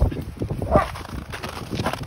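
Two dogs running and play-fighting on crusted snow: irregular crunching footfalls of their paws, with one brief louder sound a little under a second in.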